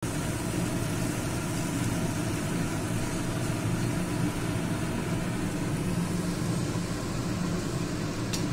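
Kochuri deep-frying in hot oil in a pan, sizzling steadily, over a steady low hum.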